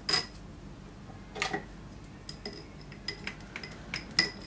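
Small knocks and clicks of hands, metal scissors and tape working at a glass bowl as florist's pot tape is pressed over chicken wire and cut. There are two louder knocks, near the start and about a second and a half in, then a run of light ticks with a faint glassy ring.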